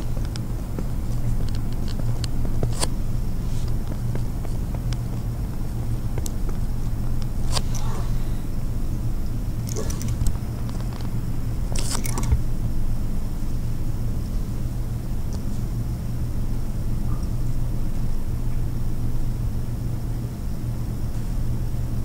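Steady low hum of room and recording noise, with a few brief faint clicks and short rustling noises scattered through it.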